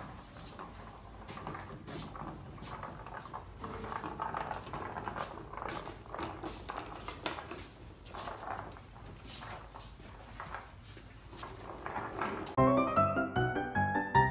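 Room sound with scattered knocks and clatter, then background piano music starts suddenly near the end and is much louder.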